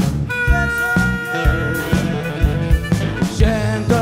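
Live blues-rock band playing: an amplified harmonica holds one long note for about two seconds over a steady drum-kit beat and the rest of the band.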